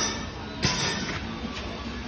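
Pneumatic flat screen printing machine working through a print stroke set off by its foot pedal. There is a click at the start, then a sharp burst of air hiss with a knock about half a second in, as the air cylinders drive the squeegee head.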